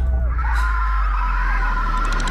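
A loud, steady deep drone with a wavering, siren-like high tone entering about half a second in: a trailer's sound-design effect.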